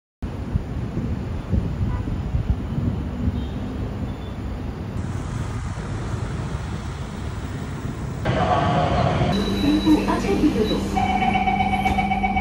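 Steady low rumble of city traffic. About eight seconds in it changes to the inside of a metro train car, with a recorded voice announcement and a steady hum, then the rapid beeping of the door-closing warning near the end.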